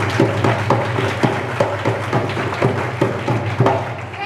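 Dholak hand drum struck in a quick, uneven run of sharp strokes, about six a second, over a steady low hum from the sound system.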